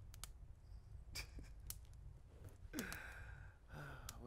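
A faint sigh from a person lying back half-asleep, about three seconds in, its pitch falling, over a low steady room hum with a few soft clicks.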